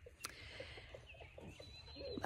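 Faint chicken clucking, a few short low notes each second, with faint high bird chirps above it.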